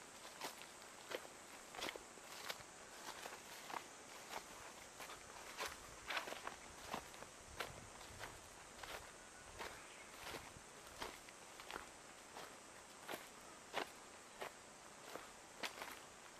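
Footsteps of one person walking at a steady pace over grass and dry leaf litter on a disused railway bed, about one and a half steps a second.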